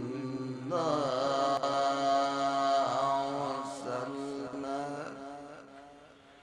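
A man reciting the Quran in Arabic in the melodic, chanted qirat style. A held note breaks off, then one long ornamented phrase begins about a second in and trails off near the end.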